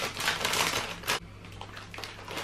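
A crinkly plastic bag of barbecue Fritos corn chips being pulled open by hand: dense crackling, then a sharp rip about a second in as the seal gives.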